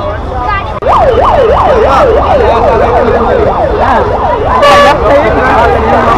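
An electronic siren yelping, its pitch sweeping quickly up and down and speeding up as it goes, starting about a second in over steady street traffic noise. A short steady horn tone sounds near the end.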